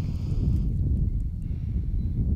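Wind buffeting the microphone: a loud, uneven low rumble that rises and falls.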